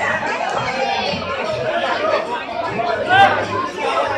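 A crowd of people talking and calling out at once, many voices overlapping, with one voice rising louder in a shout about three seconds in.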